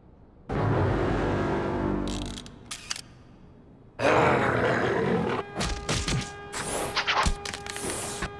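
Cartoon sound effects and music. A low rumble starts about half a second in and fades out by two seconds, followed by a few clicks. A loud rush of noise comes in at about four seconds, then music with held tones and a run of sharp clicks.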